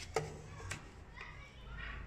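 Two sharp clicks in the first second as a plastic set square is set down and shifted on the drawing board, with children's voices chattering faintly in the background.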